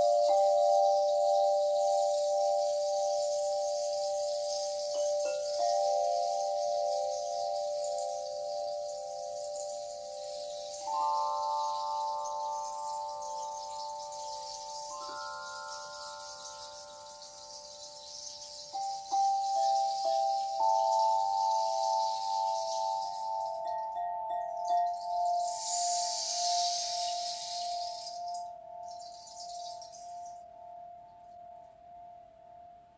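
Metal singing bowls struck one after another, a new bowl about every four to five seconds, each ringing on with a slow pulsing wobble and the tones overlapping. A soft high hiss of a rain stick runs beneath and swells again near the end.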